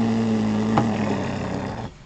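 A harsh, raspy buzzer sound effect that starts and stops abruptly and lasts about two seconds, its pitch sagging slightly, with a click about halfway through. It is a joke 'fail' sound marking a disappointing pull.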